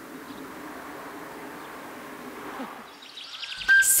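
Quiet, steady outdoor garden ambience, an even hiss with no distinct events. Near the end, music begins with a held high note.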